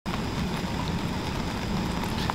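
Steady outdoor ambience: an even, rain-like hiss with no voice over it, copied onto the recording by spectral ambience matching.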